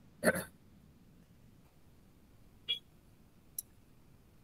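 A single short spoken "yeah" just after the start, then low background from the call, broken by a brief small sound partway through and a faint click near the end.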